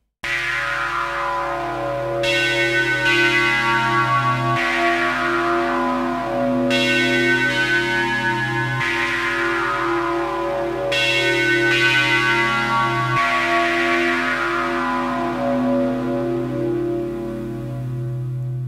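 Elka Synthex polyphonic synthesizer playing a slow progression of sustained chords, the bass note changing about every four seconds. Its tone is full, rich and kind of melancholy.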